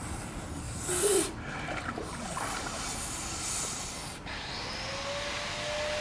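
Water swishing and lapping as a person wades through a pond, with a short splash about a second in.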